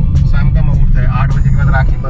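Steady low road and engine rumble inside a moving car's cabin, with a man talking over it.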